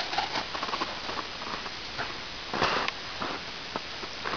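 Footsteps crunching in snow: a run of small, irregular crunches, with a louder crunch about two and a half seconds in.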